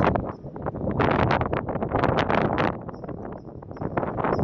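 Gusty wind buffeting a phone's microphone, a ragged rushing rumble that is loudest from about a second to three seconds in.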